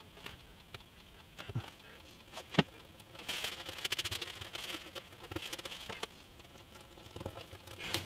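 Quiet hand-work on a wooden guitar body: a few light taps, the sharpest about two and a half seconds in, then from about three seconds in a few seconds of fine crackling rustle as a cloth wipes glue off the wood.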